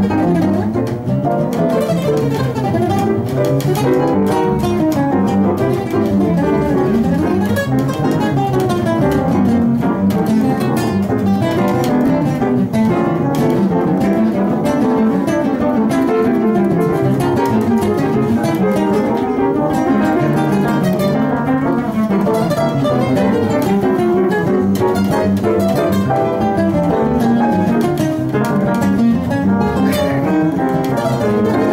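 Jazz trio of grand piano, pizzicato double bass and guitar playing a standard, with running melodic lines over a steady accompaniment.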